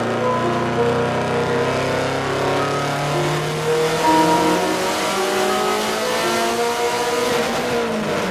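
Subaru Impreza WRX STI's turbocharged flat-four engine making a pull on a chassis dyno, its revs climbing steadily under load.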